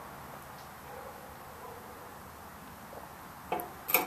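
Faint steady background hiss, then two short knocks near the end as a stemmed beer glass is lowered and set on the table.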